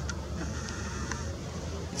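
Steady low outdoor background rumble with a few faint clicks.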